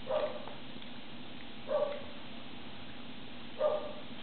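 Three short pitched animal calls, evenly spaced about two seconds apart.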